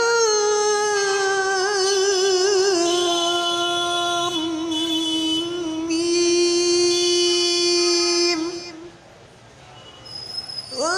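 Quran recitation (tilawat) by a single voice chanted in a high register: one long melismatic phrase with wavering ornaments and sustained held notes. The phrase ends about eight and a half seconds in, followed by a short pause.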